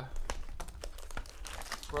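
Crinkling and rustling of foil-wrapped trading-card packs and their box being handled, with scattered light clicks and taps.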